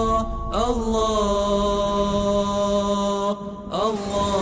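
Sustained vocal chant in long held notes, as the opening theme music. There is a brief break about half a second in and again near the end, and each new note begins with a rising slide.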